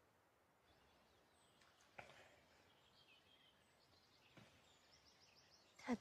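Near silence: faint outdoor ambience with a few quiet bird chirps and a soft click about two seconds in.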